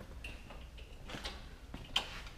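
Faint scattered ticks and light knocks of handling, ending in one sharp click.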